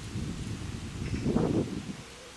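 Wind buffeting an outdoor camera microphone: an uneven low rumble that swells briefly about a second and a half in.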